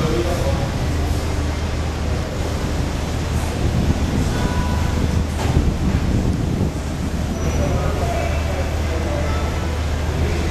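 Steady low hum and street noise, with faint, indistinct voices in the background.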